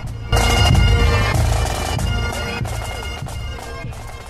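Pipe band playing: Great Highland bagpipes sounding steady drones and melody over drum beats. It starts abruptly about a third of a second in, then slowly fades.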